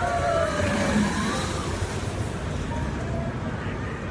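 Fury 325 giga coaster train running along its steel track: a steady rushing roar with no clear start or stop.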